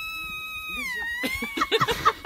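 A long, high-pitched call on one held note that slides down in pitch about a second in, followed by short, quick chirping vocal sounds.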